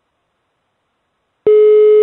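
Telephone ringback tone heard down the line: after silence, one steady beep starts about one and a half seconds in. It is the ringing of an outgoing call that has not yet been answered.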